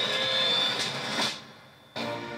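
Movie trailer sound design: a dense whooshing noise with a high held tone and a couple of sharp hits, cutting off abruptly about one and a half seconds in to a brief hush.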